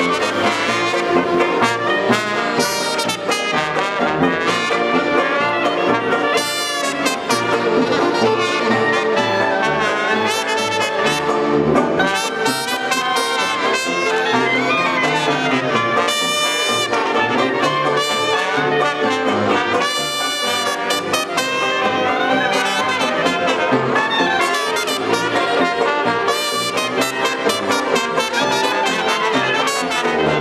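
Traditional New Orleans-style jazz band playing live: cornet, trombone and clarinets on the melody over a rhythm section of piano, banjo, tuba and drums.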